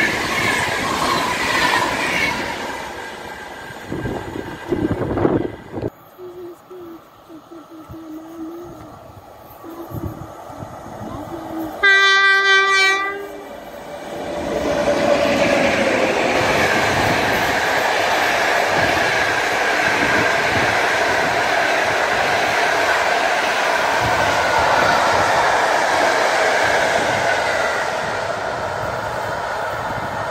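Passenger coaches roll past over the rails for the first few seconds. About twelve seconds in, an electric locomotive sounds its horn once for about a second. Then a passenger train hauled by two PKP EP07 electric locomotives rolls by with a steady rumble of wheels on rail, easing slightly near the end.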